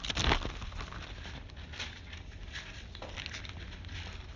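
Thin Bible pages being leafed through: paper rustling and flicking, loudest just after the start, then a run of softer page turns.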